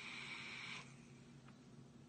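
Faint airy hiss of a drag being drawn through a Smok Mag vape kit's Prince tank, stopping under a second in.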